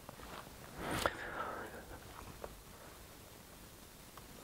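Quiet room tone with a soft breathy noise about a second in and a few small clicks a little later. These are close, faint sounds, likely the lecturer breathing and handling things at the laptop.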